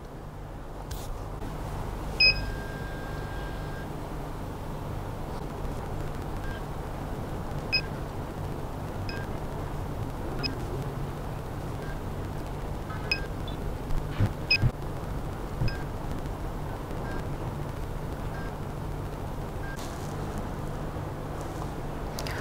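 Steady low hum of the running 3D scanner and turntable, with a short beep as the scan starts about two seconds in, then short faint ticks about every second and a half as the scan steps through its twelve positions.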